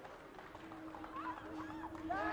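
Scattered shouts and calls of football players on the pitch during a set piece, fairly faint, over a low steady hum.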